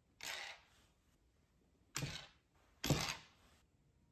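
Pennies struck by hand off the edge of a wooden shove ha'penny board, three times about a second apart. Each is a sharp hit with a short tail as the coin slides across the board.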